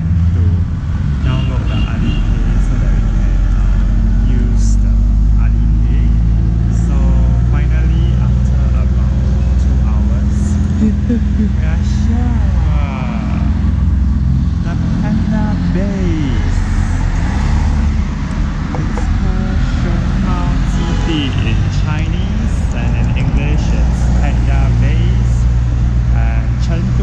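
Steady low rumble of a motor vehicle, with indistinct voices talking over it.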